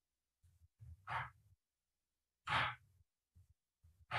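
A person's breaths close to the microphone: two short exhalations, about a second in and a louder one at about two and a half seconds, with faint low thuds between them.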